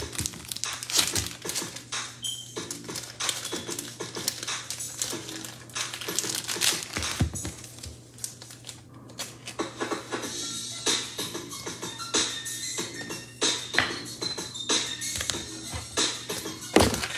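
Trading cards being slid into plastic penny sleeves, a run of irregular crinkles and light clicks of plastic and card handling, over quiet background music.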